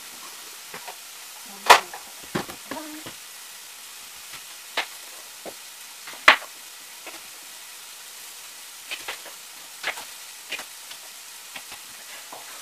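Kitchen knife cutting a Granny Smith apple on a cutting board: scattered sharp knocks and cuts, the two loudest about two and six seconds in.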